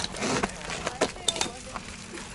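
A few sharp clicks and knocks from a mountain bike being held and shifted on rocky ground, under low, indistinct voices.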